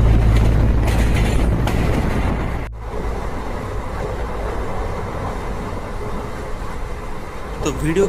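Passenger train running, heard from inside a sleeper coach: steady running noise from the carriage. A low hum in the first few seconds breaks off abruptly, and an even rumble follows.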